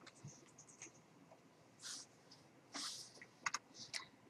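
Faint clicking at a computer while a web page is navigated: a few light clicks early on and two sharper clicks near the end, with two short soft hisses in between.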